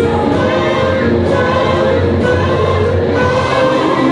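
Alto saxophone playing a melody of changing notes over a recorded accompaniment.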